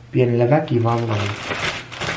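A man's voice saying a word, then a plastic carrier bag rustling and crinkling as it is lifted and opened near the end.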